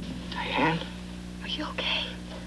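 Short breathy vocal sounds, whispered or gasped rather than spoken aloud: one about half a second in and hissy ones near the end, over a steady low hum.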